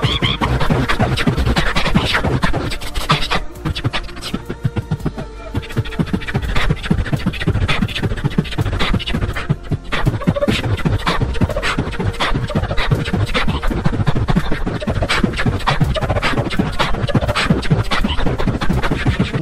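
Beatboxing: mouth-made drum sounds, a rapid stream of kick-like thumps and sharp snare and hi-hat clicks in a steady rhythm, a little quieter for a couple of seconds early on.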